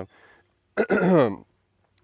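A man clearing his throat once, a short rough vocal sound that falls in pitch, about three-quarters of a second in.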